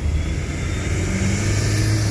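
Toyota 2C four-cylinder diesel engine of a 1992 Corolla running steadily at about 2,000 rpm while driving, heard from inside the cabin as a low steady drone mixed with road noise.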